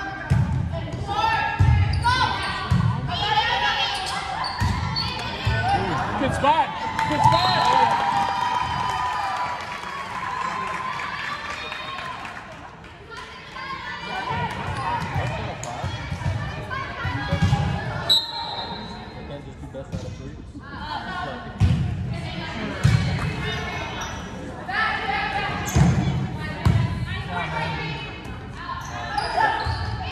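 Volleyball being played on a hardwood gym floor: repeated thuds of the ball being hit and bouncing, with players' and spectators' voices echoing around the large gym.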